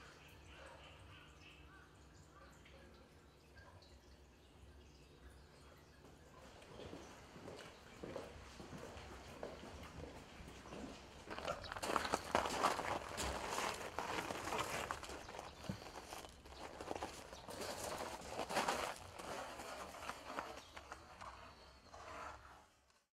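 A faint steady hum at first. Then, from about halfway through, irregular crunching and knocking that comes and goes, typical of footsteps on gravel while large wooden paper-drying boards are handled.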